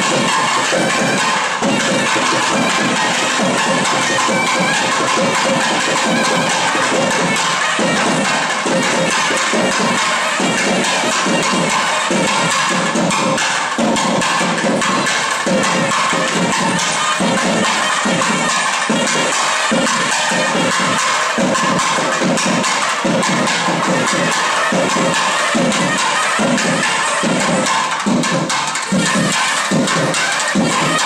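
South Indian temple procession music: thavil drums beating a steady rhythm under the long held reedy tones of nadaswaram, with a crowd's noise mixed in.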